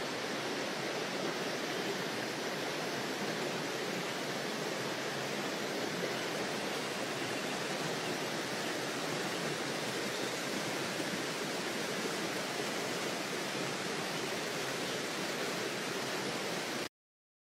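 Steady, unbroken rushing of running water, like a nearby stream.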